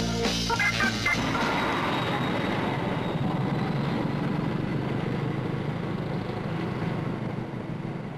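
Music ends about a second in, giving way to a train's rumbling noise that slowly fades away, as a train pulls out of the station.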